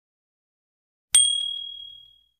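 Notification-bell sound effect: one bright, high ding a little over a second in, ringing on and fading away over about a second.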